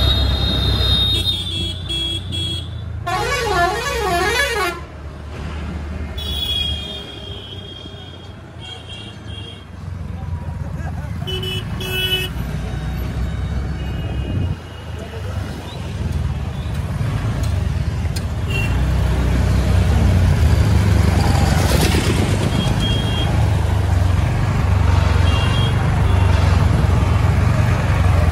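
Busy town traffic heard from a moving two-wheeler, over a steady low rumble of engine and wind. Vehicle horns honk several times, including a warbling horn that rises and falls about three to four seconds in.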